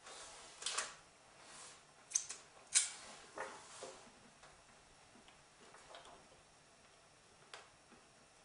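Faint, sharp clicks and crunches of chewing: a piece of dark mint chocolate with hard caramel bits bitten and chewed, the hard caramel crunching. The loudest crunches come in the first four seconds, with a few fainter ones near the end.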